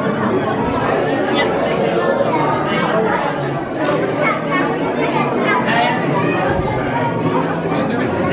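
Indistinct talking: people's voices chattering, with no other distinct sound standing out.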